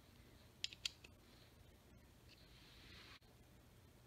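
Near silence with two faint, short clicks just under a second in: a nut driver's plastic handle and shaft knocking against its plastic pegboard rack as it is handled.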